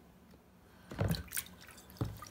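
Two short splashes of water about half a second apart, as a Wedgwood Jasperware lid is put into water in a sink to rinse off bleach.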